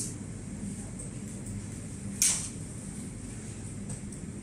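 Steady low background hum, with one short, sharp scraping click a little past two seconds in.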